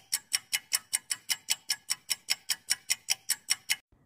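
Clock-ticking sound effect for a quiz countdown timer: sharp, even ticks about five a second, stopping just before the end.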